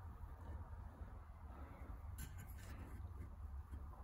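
Quiet workshop room tone with a steady low hum, and one faint, brief rustle of wood being handled on the bench a little past halfway.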